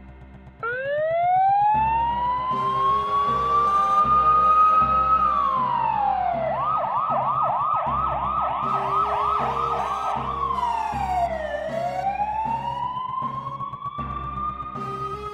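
An emergency-vehicle siren starts suddenly about half a second in with a slow wail that rises, falls, then switches to a fast yelp of about three to four warbles a second before falling and rising again. Low background music with a repeating beat continues underneath.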